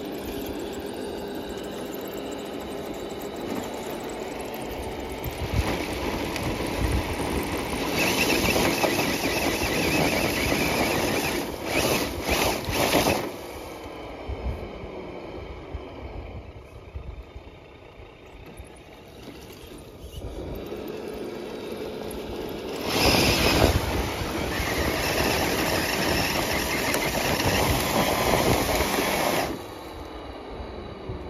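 Traxxas TRX6 six-wheel RC crawler's electric motor and geared drivetrain whining as it climbs a dirt bank on paddle tires. The sound swells in two louder stretches, one about a third of the way in and one in the last quarter, and dies away just before the end.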